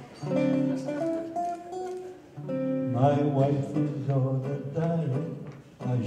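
Acoustic guitar accompaniment with a 100-year-old man singing a lighthearted song in held notes that step from pitch to pitch, in two phrases with a short break in the middle.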